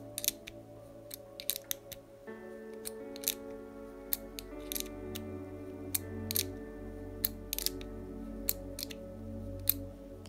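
Soft background music, with irregular sharp clicks of a box wrench turning a ball connector into a plastic RC-car front upright as it is threaded in.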